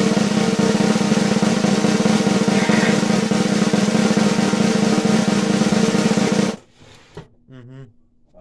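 Snare drum roll sound effect with a steady low tone under it. It is loud and continuous, then cuts off suddenly about six and a half seconds in.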